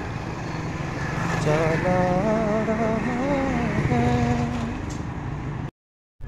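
A motorcycle engine running on the move, with a voice singing long, wavering notes over it for a few seconds. The sound cuts off abruptly just before the end.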